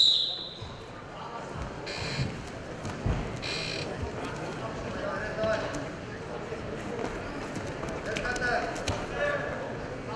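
Sports-hall crowd murmur with men shouting now and then, and a few dull thumps from the wrestlers' feet and bodies on the mat as they grapple.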